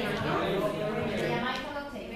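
Indistinct talking among schoolchildren working at their tables, no words clear enough to make out.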